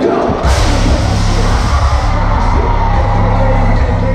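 Live rock music played loud through a concert PA, heard from within the audience, with heavy bass and drums coming in about half a second in. Crowd whoops and yells are heard over it.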